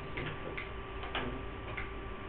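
Light ticks or taps, about four of them irregularly spaced, over a steady electrical hum and hiss.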